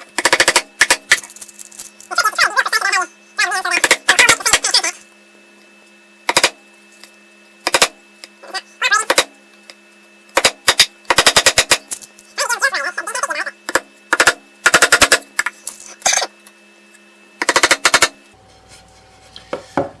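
Claw hammer driving small nails into a plywood board: about ten quick runs of light taps, one run per nail, with short pauses between while the next nail is set.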